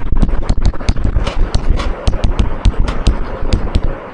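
Chalk tapping and knocking against a blackboard during writing: a rapid, irregular run of sharp clicks, several a second.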